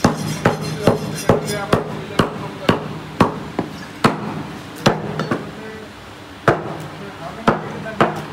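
A butcher's cleaver chopping beef on a wooden chopping block: repeated heavy blows, about two a second and unevenly spaced, with a short pause past the middle.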